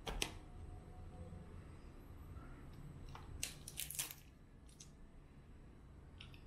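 Cooked crab shell cracking and snapping as it is pulled apart by hand: one sharp crack at the start, then a quick run of cracks about three and a half to four seconds in, and one more just after, over a low room hum.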